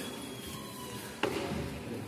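Music playing in the background with one sharp thump a little past the middle.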